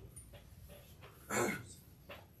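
A brief pitched vocal sound from a man, about a second and a half in, over quiet room tone.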